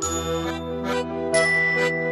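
Instrumental background music: sustained chords with bright, ringing bell-like notes struck at the start and again about halfway through.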